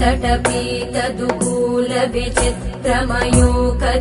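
Devotional music: a Sanskrit hymn chanted to a melody over a steady drone, with percussion strokes.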